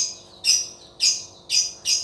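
A bird chirping over and over, short high calls about twice a second.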